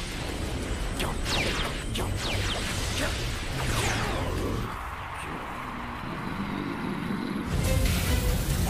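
Anime battle sound effects over background music: whooshes and crashing, shattering impacts as rocks burst apart, with several falling swooshes in the first half.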